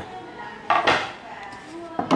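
Hard wooden clatter from a heavy gõ đỏ (Afzelia) wood compartment box being handled, with one loud clack about two-thirds of a second in and a short knock at the very end.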